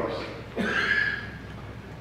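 A short voice-like sound about half a second long, a little after the start, then fading into the quiet of a hall.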